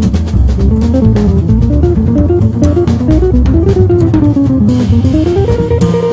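Jazz trio of guitar, upright bass and drums: the guitar plays a winding single-note line that falls and rises, settling on a held note near the end, over walking bass and cymbal strokes.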